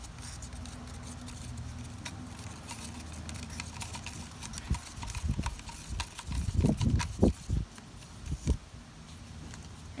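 Paint being stirred with a stick in a thin plastic cup: a steady run of light clicks and scrapes against the cup. A few dull low thumps come in the second half.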